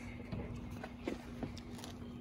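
Several faint clicks and knocks of plastic battery packs, Milwaukee M18 lithium-ion batteries, being handled on a wooden deck, over a faint steady hum.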